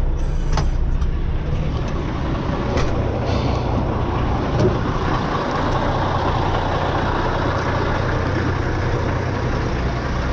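Semi-truck diesel engine idling steadily, with a few sharp clicks in the first three seconds.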